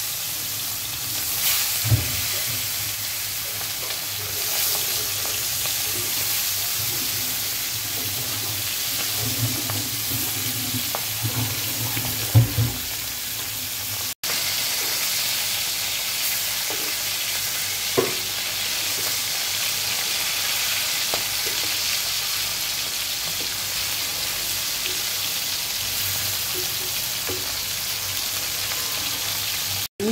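Chapila fish (Indian river shad) coated in turmeric and salt, shallow-frying in hot oil in an iron pan: a steady, even sizzle. A few sharp knocks of a metal spatula against the pan are heard, the loudest about halfway through.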